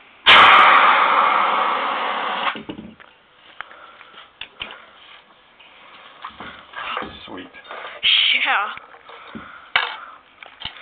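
CO2 fire extinguisher discharging: a sharp click as the valve opens, then one loud hissing blast of about two seconds that fades as it goes, the carbon dioxide freezing into dry ice snow in a towel-wrapped dish.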